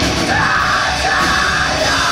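Death metal band playing live, with distorted electric guitars, bass guitar and drums, joined about a third of a second in by the vocalist's harsh screamed vocals.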